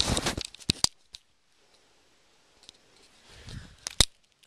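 Handling noise from the camera being covered and moved: a cluster of clicks and rustles in the first second, then near quiet, then another rustle and a sharp click near the end.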